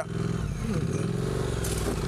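Triumph Street Twin's parallel-twin engine pulling at low revs over rough grass, its pitch swelling and easing as the bike briefly gets stuck, with a short hiss near the end.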